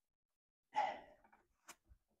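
A man's short breathy sigh, followed by two faint clicks near the end.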